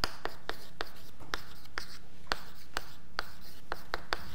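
Chalk on a blackboard during handwriting: an irregular run of sharp taps and short scrapes, about two or three a second, as each stroke and letter is put down.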